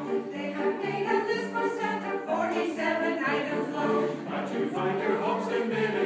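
Small mixed choir of men's and women's voices singing a Christmas choral piece, several voice parts together in sustained, changing chords.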